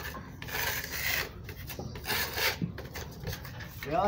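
Metal putty knife scraping over a concrete wall in several repeated strokes, spreading filler into the cracks.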